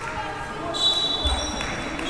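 Basketball game sounds in a gym: players' voices, a sharp high tone starting just under a second in, and a low thud a little later, typical of a basketball bouncing on the hardwood court.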